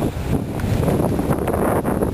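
Wind buffeting the microphone: a steady, loud, low rumbling hiss with irregular flutter.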